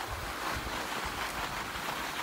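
Steady rushing noise of skis sliding over packed snow, with wind buffeting the phone's microphone.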